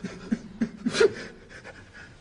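A person's short gasping breaths with voiced catches, several in quick succession, the strongest about a second in.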